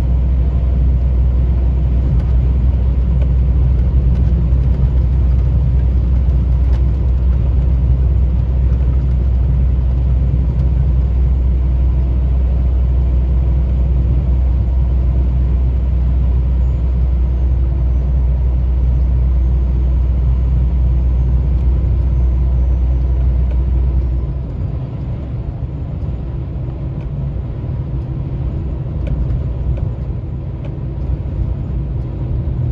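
Steady low engine and road drone heard from inside a truck cab while driving on a highway. About 24 seconds in, the deep drone drops away and the overall level falls, leaving lighter road noise.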